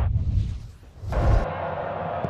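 Broadcast transition sound effect for an animated logo wipe: a whoosh over a deep bass rumble. It dips about halfway through and ends in a heavy low boom a little past one second, then cuts off.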